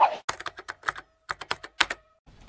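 Computer keyboard typing sound effect: a quick run of about a dozen keystroke clicks with a brief pause about a second in, as title text is typed onto the screen.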